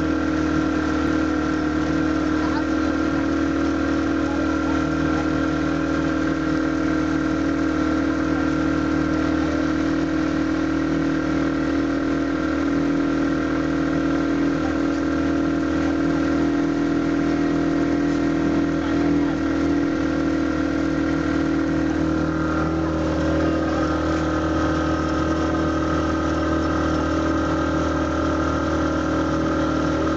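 A passenger boat's engine running at a steady speed: an even drone that holds unchanged throughout.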